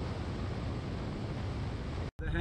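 Steady road and wind noise from a car driving along a highway: a low rumble under an even hiss.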